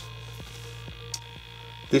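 Steady low electrical hum, with a faint click about a second in.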